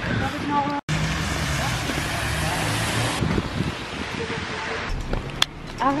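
Steady hiss of hard rain on a wet city street, with a low hum underneath. There is a sharp click about five and a half seconds in.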